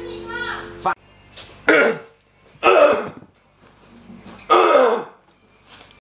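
An acoustic guitar chord rings under a trailing voice, then cuts off sharply about a second in. After that come three short, loud bursts of a person's voice with pauses between them.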